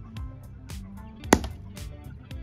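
A Ryobi claw hammer strikes a cube of olive-oil-and-water ice on concrete paving once, about a second and a half in, with a sharp crack as the ice breaks, over background music.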